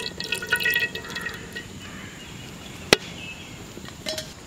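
Cooking oil trickling and dripping into an aluminium pan, with short ringing and clicking sounds that die down after about a second and a half. A single sharp click comes a little before three seconds in.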